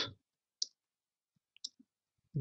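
A few faint keystrokes on a computer keyboard: single clicks about half a second in and a small cluster near the end.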